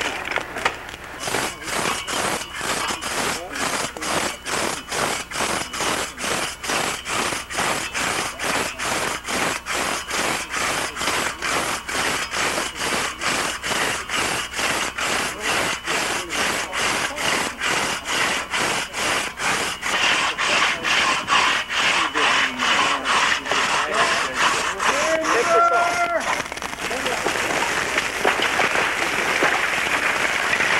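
Two-man crosscut saw cutting through a white pine trunk, with steady rhythmic strokes at about two to three a second. Near the end the strokes stop and a continuous rushing noise follows.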